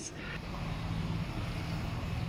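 Street traffic: a steady vehicle engine hum over a wash of road noise.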